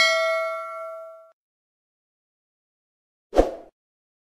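Bell-chime 'ding' sound effect of a subscribe-button animation, ringing out and fading away over about a second. A short soft thud comes about three and a half seconds in.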